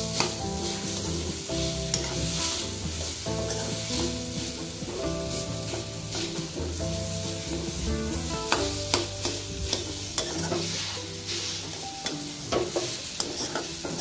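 Perforated steel ladle stirring and scraping crumbled lentil usili in a metal kadai as it fries, with irregular clicks of the ladle against the pan and a light sizzle. Steady held low tones run underneath throughout.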